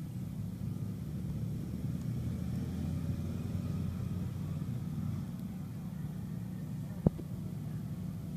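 A steady low rumble of outdoor background noise, with a single sharp click about seven seconds in.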